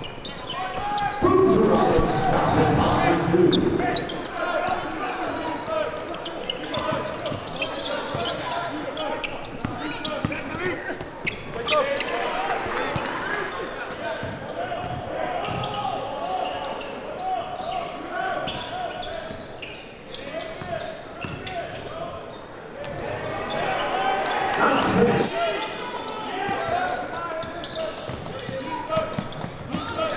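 Live game sound in a large gym: a basketball bouncing on the hardwood court amid crowd and player voices, with the crowd noise louder about a second in and again near the end.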